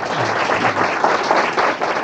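Lecture-hall audience applauding, a dense patter of many hands clapping, with some laughter mixed in.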